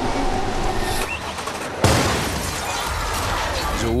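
Staged car-bomb explosion: a sudden loud blast just under two seconds in, followed by a long noisy wash that slowly settles.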